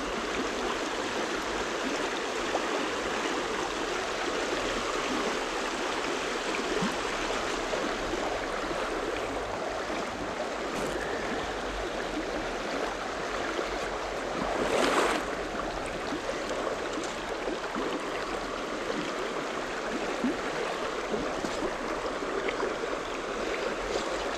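Small, shallow stream running over a stony bed: a steady rush of flowing water, with one brief louder swish about two-thirds of the way through.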